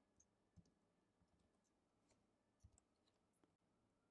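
Near silence: faint room tone with two very faint clicks, one about half a second in and one a little past halfway.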